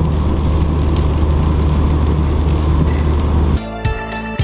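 Car cabin noise at motorway speed on a wet road: a steady low engine and road rumble with tyre hiss. About three and a half seconds in it cuts off suddenly and music begins.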